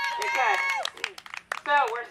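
People's voices, with scattered, irregular hand claps from a group.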